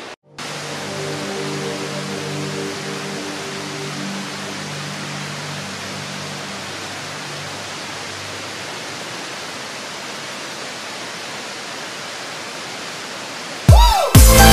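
Steady rushing of flowing river water. Soft sustained musical tones sound over it in the first half and fade out, and loud electronic dance music cuts in at the very end.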